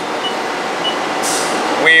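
Steady background noise of a machine shop, like ventilation or air handling, with a short hiss a little after a second in.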